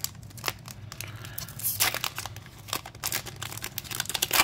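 Foil Pokémon booster pack wrapper being torn open and crinkled by hand: a run of sharp crackles, with a louder rip just before two seconds in.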